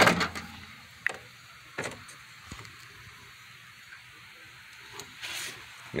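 A short knock, then a couple of sharp clicks and a brief rustle near the end over quiet room hiss: someone handling things at the microwave and pulling on a glove.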